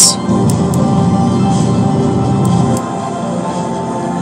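Music from a radio station playing through a vintage Marantz 2250B stereo receiver while its loudness switch is tried. About three seconds in, the sound drops in level and loses some of its low end.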